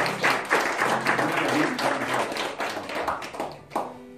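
An audience claps and applauds at the end of a song, and the applause dies away near the end.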